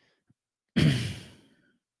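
A man clears his throat once, close to the microphone: a single short voiced rasp about three-quarters of a second in that fades away over about a second.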